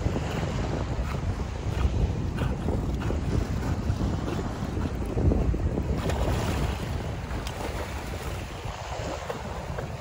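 Wind buffeting the microphone over the wash of choppy sea water lapping and sloshing, a steady rumbling noise that eases a little near the end.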